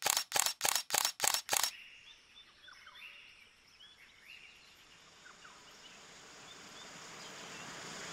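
A quick run of about seven sharp clicks, some three to four a second, then faint bird chirps, and the rush of a small waterfall that grows louder toward the end.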